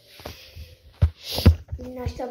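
A few dull, low thumps from the phone camera being handled as it is carried, two of them close together just after the middle. A voice starts near the end.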